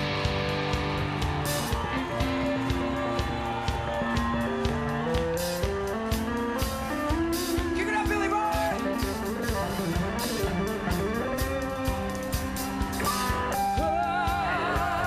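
Live hard rock band playing an instrumental passage: an electric guitar line that climbs in steps and then bends and wavers, over bass, drums and regular cymbal crashes.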